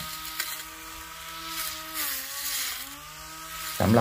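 Cordless battery-powered grass trimmer with short blades running as it cuts lawn grass: a steady electric-motor whine that sags in pitch for about a second midway, then picks back up.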